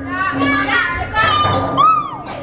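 A young woman squealing and shrieking while riding down an enclosed tube slide, ending in a long, high held cry that rises and falls.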